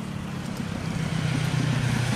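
Motorcycle engine running as it approaches along the road: a steady low hum that grows slowly louder.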